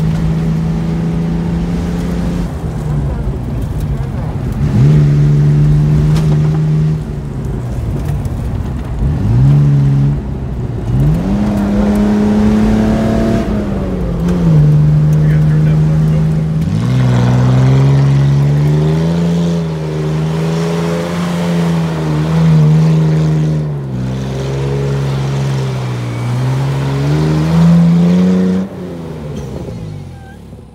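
1997 Nissan Pathfinder's 3.3-litre V6 engine running hard off road, its pitch holding steady, then dropping and climbing again several times as the revs change. Past the middle the revs climb sharply and then waver up and down while the truck spins in the dirt.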